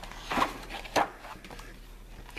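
A picture book's paper page being turned by hand: two short rustles, about half a second and one second in, then faint sliding of paper.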